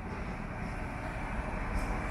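City street traffic: a steady low rumble of a car driving along the street, growing slightly louder toward the end as it approaches.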